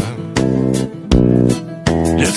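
Instrumental break in a pop song: guitar and bass guitar playing sustained chords, a new chord struck three times.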